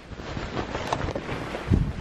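Rustling and rubbing of a handheld phone's microphone and bedsheets as the phone is moved about, with a heavy low thump near the end.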